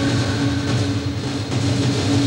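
A loud, steady rumbling drone, a low hum over a deep rumble and a hiss, that cut in abruptly just before: a dramatic soundtrack effect.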